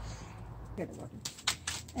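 Hand-held bypass pruning shears snipping a rose stem: a few sharp clicks in quick succession a little past the middle, with some rustling of the foliage.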